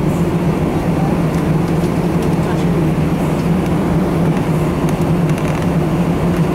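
Steady cabin drone of an Airbus A319 taxiing: engines at low power and the air-conditioning hum, with a constant low hum under an even rush of noise.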